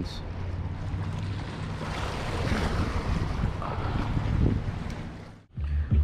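Sea waves washing against a rock breakwater, with wind on the microphone. The sound fades and cuts out suddenly near the end.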